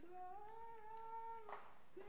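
A person singing one long held note, faint, rising slightly in pitch, with a short breathy hiss about one and a half seconds in.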